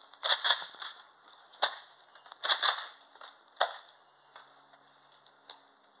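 Toy foam-dart blasters firing: a string of sharp pops, some in quick pairs, mostly in the first four seconds, with a last one near the end.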